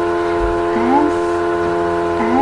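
A steady droning chord of several held tones, unchanging throughout, with a few faint short rising glides underneath about a second in.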